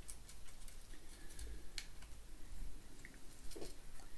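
Small paintbrush dabbing and stroking wood stain onto a miniature wooden staircase: faint, irregular ticks and soft scratches.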